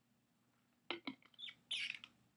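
A person drinking from a can: after a quiet start, a couple of sharp gulping clicks about a second in, then short mouth sounds and a breathy exhale near the end as the can comes away from the lips.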